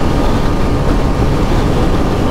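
Heavy wind buffeting the camera microphone of a motorcycle at about 60 mph, a loud, dense rumble that overloads the audio despite a furry dead-cat windshield. The Kawasaki Ninja 125's engine runs steadily underneath.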